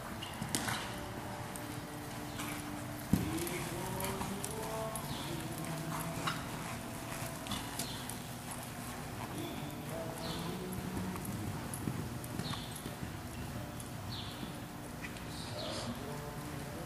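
Hoofbeats of a horse galloping and turning around barrels on arena dirt, an irregular run of soft thuds. A single loud, sharp sound stands out about three seconds in.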